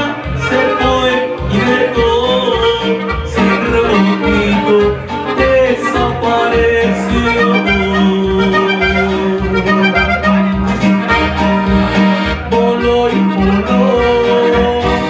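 Live band music with a button accordion and an electronic keyboard playing together over a steady, regular low beat.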